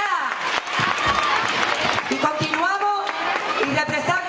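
A voice speaking over a public-address system amid crowd noise, with scattered clapping in the first couple of seconds and clearer speech about two seconds in.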